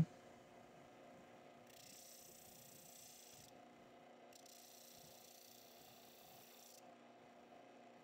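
Near silence: faint room tone with a low steady hum and a faint hiss that comes and goes.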